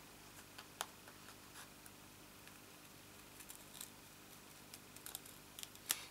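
Craft scissors snipping a thin strip off a sheet of foam adhesive dimensionals: faint, scattered snips, with a sharper click about a second in.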